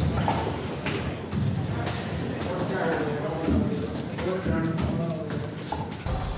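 Irregular dull thumps and scuffling in a reverberant concrete cell block, with men's voices: several inmates beating a man in a cell.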